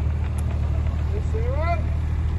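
JCB mini excavator's diesel engine idling steadily. A short rising vocal sound comes in over it a little past halfway.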